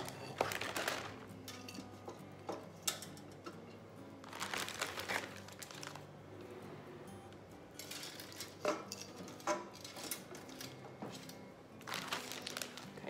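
Quiet rustling with scattered light clicks and taps as small decorations are set down and pushed into a berry garland on a tray.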